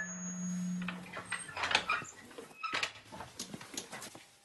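Low hum of a classroom PA loudspeaker that dies away about a second in. Then come scattered light knocks and shuffles, typical of a class of boys settling at wooden desks.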